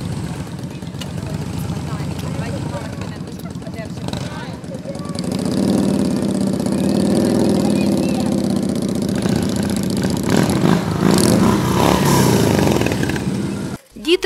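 Cruiser motorcycles running at low speed. The engine sound grows louder about five seconds in, with a rise and fall in pitch as a bike is throttled up and eased off, then runs on steadily until it cuts off just before the end.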